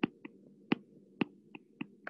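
A stylus tip tapping on a tablet's glass screen during handwriting: six short, sharp, irregular clicks over a faint steady low hum.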